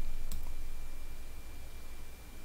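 A computer mouse clicking once, sharply, about a third of a second in, with a fainter click just after, over a faint low steady hum.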